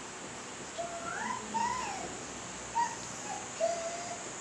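Felt-tip marker squeaking on a whiteboard as a word is written: a long wavering squeak a little under a second in, then several short squeaks with each stroke.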